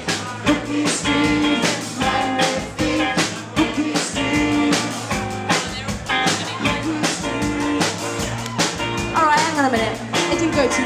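Live band playing up-tempo rock music, with a drum kit keeping a steady beat under guitar.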